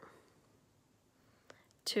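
A pause in a woman's speech: faint room tone with a single soft click about one and a half seconds in, then her talking starts again right at the end.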